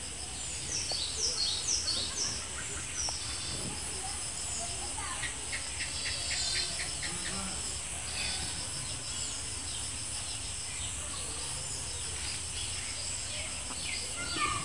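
Steady high-pitched insect chirring, crickets among it, with small birds calling. A few quick falling chirps come in the first two seconds, and a run of rapid evenly spaced ticks comes around the middle.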